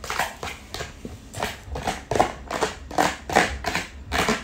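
Close-miked handling sounds: wooden chopsticks stirring noodles and vegetables in a plastic takeout tray under its lifted plastic lid, a quick run of short rustling crackles, about three or four a second.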